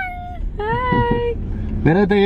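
A toddler's excited high-pitched squeals: one falling away at the start, then another held for under a second about halfway through, over the low hum of the car's cabin.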